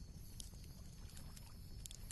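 Very quiet: faint steady hiss of background room tone, with a couple of faint clicks.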